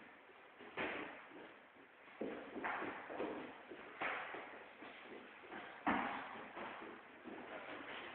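Gloved punches and kicks landing during kickboxing sparring: about five sharp thuds and slaps at irregular intervals, the loudest about three quarters of the way through, with scuffing footwork on a wooden floor between them.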